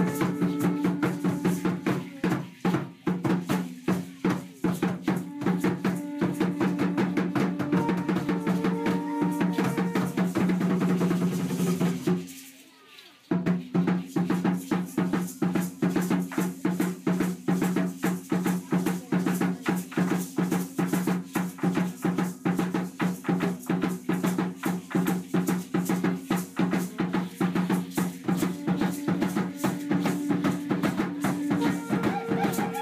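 Huehuetl drum beating a fast, steady dance rhythm with the jangle of dancers' seed-pod ankle rattles, over a steady low tone. The drumming breaks off for about a second roughly twelve seconds in, then starts again.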